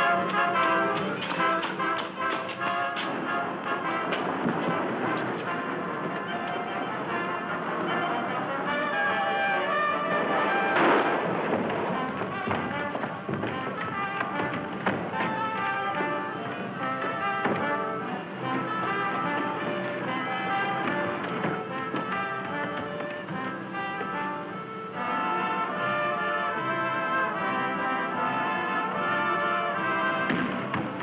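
Orchestral film score with brass, playing quick runs of notes throughout, with a loud accent about eleven seconds in.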